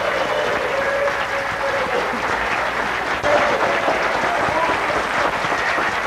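A seated audience applauding, many hands clapping at a steady level.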